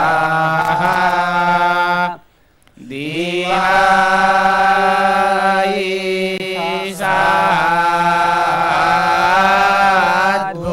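A group of young male voices chanting Sanskrit verses in unison, holding long, sustained notes. About two seconds in they pause briefly for breath, then come back in with a rising glide.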